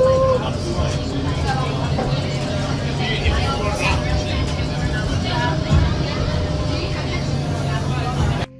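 Crowded Korean barbecue restaurant: many diners talking at once over a steady low hum.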